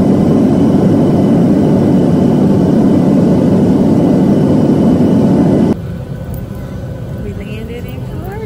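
Jet airliner engine and airflow noise heard inside the cabin at a window seat over the wing of a Boeing 737 in flight: a loud, even, deep noise. About six seconds in it cuts off abruptly, giving way to much quieter cabin background.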